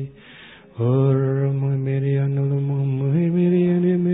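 A man's voice chanting in long held notes, singing in the spirit. After a quick breath at the start, he holds one low steady note, then steps up to a higher note about three seconds in.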